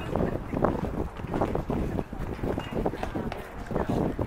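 Indistinct talking of people, with wind noise rumbling on the microphone.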